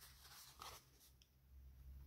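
Near silence, with faint rustles and a short tick from a papercraft head being handled.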